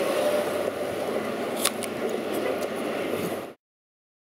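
Steady outdoor background noise with distant traffic, and a few short, crisp crunches in the middle. The sound cuts off abruptly into silence near the end.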